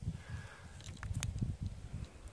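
Handling noise on a hand-held phone's microphone: an uneven low rumble with a few light clicks, the sharpest about a second in.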